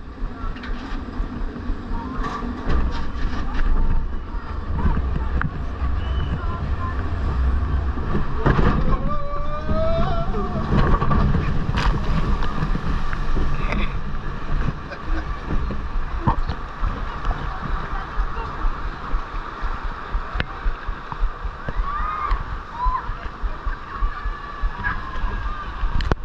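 Water sloshing and splashing around a log flume boat as it floats through the flume's water channel, over a steady low rumble.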